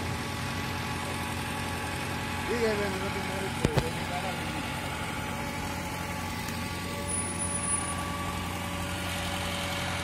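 Boom-lift truck's engine idling steadily, a constant hum. A brief voice is heard about two and a half seconds in, and a sharp click follows about a second later.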